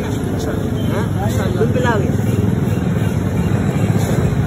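Steady road-traffic noise, a low rumble of motorbike and car engines, with people's voices talking over it.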